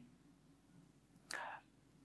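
Near silence: room tone, with one faint, short breath from the speaker a little past halfway.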